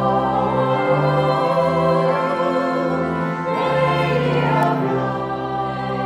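A choir singing a slow sacred piece, its voices in long held notes over steady sustained low notes.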